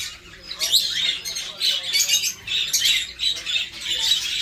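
A room full of caged budgerigars and other small birds chirping and chattering all at once, many short high calls overlapping without pause.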